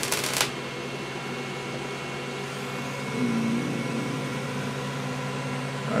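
A solid-state Tesla coil's power-arc discharge buzzes as a rapid train of crackling pulses, then cuts off suddenly about half a second in when the coil is switched off. What is left is a steady electrical hum with a faint whine from the equipment still running.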